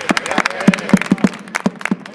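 Several children beating tapetanes, the drums of Rioseco's Holy Week, with wooden sticks: about a dozen short, dull strikes in two seconds, ragged and not quite together, as beginners practise a beat.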